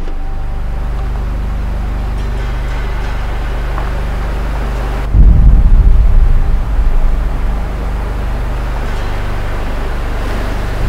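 Pickup truck engine idling with a steady low hum; about five seconds in, the low rumble swells much louder for a second or two, then settles back to idle.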